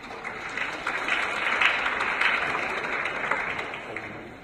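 Audience applauding, growing louder about a second in and then holding steady.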